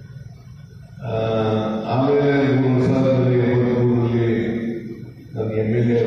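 A man's voice over a public-address system, starting about a second in. He draws his words out long and level in pitch, almost like a chant, with a short break near the end.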